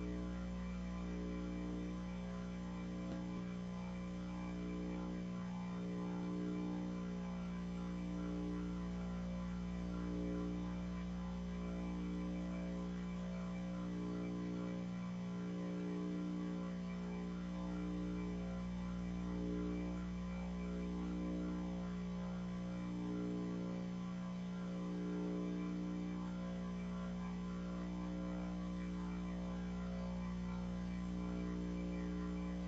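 Steady electrical hum, a low buzz with many overtones and a slow, regular throb, unchanging throughout.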